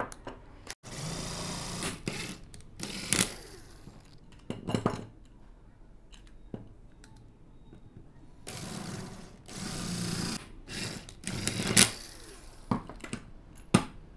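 Cordless drill running in several short bursts as it drills and taps threaded holes into an angle grinder's blade guard, with clicks and knocks of the tool and part being handled between runs.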